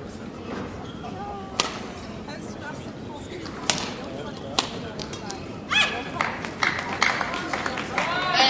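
Badminton rally: sharp racket strikes on a shuttlecock, three single hits spaced one to two seconds apart over a steady hall murmur. Near the end they give way to a quick flurry of sharp clicks and short high squeaks, with voices rising.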